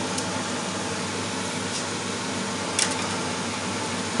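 Steady mechanical hum and hiss like a running fan, with a faint light click a little under three seconds in.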